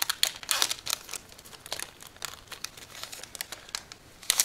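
Foil Yu-Gi-Oh! booster pack wrapper crinkling as it is torn open. The crinkles are loudest in the first second or so, then come as fainter scattered rustles.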